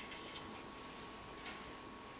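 A quiet room with a few faint, sharp clicks: two near the start and one about one and a half seconds in.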